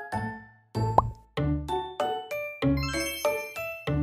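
Light, cute background music made of short pitched notes. It breaks off briefly, and about a second in a single quick rising 'bloop' sound effect plays before the music resumes.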